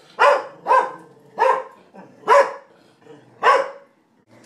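Beagle barking five times in loud, separate barks at uneven intervals: fearful alarm barks at a balloon that has frightened her.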